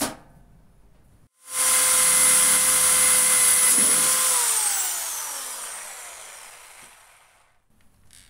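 Electric drill running at a steady pitch against a sheet-metal panel for about three seconds, then released so the motor whines down and coasts to a stop. A short click comes just before it starts.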